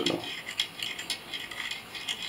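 Irregular light metallic clicks and clinks from a partly assembled airsoft V2 gearbox shell being handled and moved about by hand.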